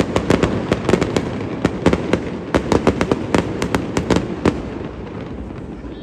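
Aerial fireworks bursting: a rapid, irregular volley of sharp cracks and bangs that stops about four and a half seconds in and fades to a low rumble.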